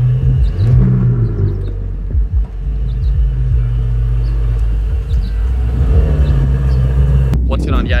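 Ferrari mid-engine V8 sports car running at low speed, with a brief rise in revs about a second in. The sound cuts off suddenly near the end.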